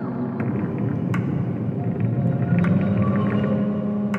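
Ambient electronic music: a low held drone that swells about halfway through, with a few sharp clicks over it.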